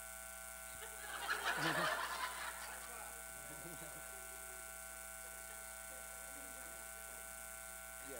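Audience laughing in a short burst about a second in, dying away by about three seconds, over a steady electrical hum.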